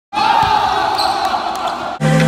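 Live sound of an indoor basketball game: a basketball bouncing on the hardwood court and players' voices in a large gym. It cuts off suddenly at the end.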